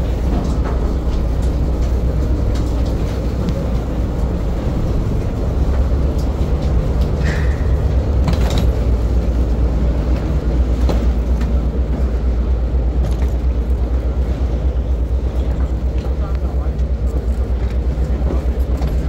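Low, steady rumble of a docked ferry's engines, with voices in the background and a few sharp clicks from people and luggage crossing the gangway.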